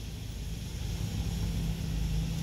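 Steady low hum inside the cabin of a 2022 Honda Ridgeline, its 3.5-litre V6 idling with the audio system switched off.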